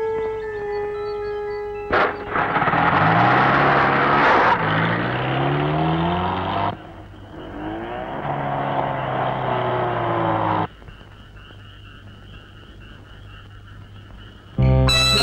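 A car engine revving up and pulling away, with a rising pitch, heard in two stretches that each stop abruptly. A held music note comes before it, and a fainter high wavering trill follows.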